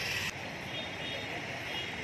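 Busy street noise of traffic with voices in the background. It drops suddenly about a third of a second in and then runs on steadily at a lower level.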